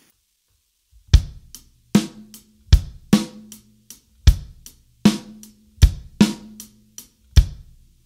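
Drum kit playing a slow rock beat, bass drum and snare drum taking turns, starting about a second in. Each snare hit rings on briefly after the stroke.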